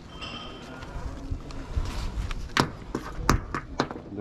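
A few sharp, irregular clicks and knocks in the second half as a ratchet strap is worked around the metal tube of a broken train pantograph to lash it down.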